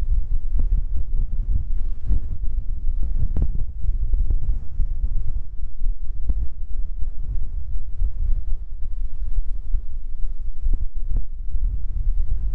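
Wind buffeting the microphone: a loud, gusty low rumble that rises and falls unevenly.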